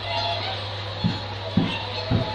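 Whooper swans in a feeding flock calling faintly, short pitched notes, with a few low thumps about a second in and again near the end.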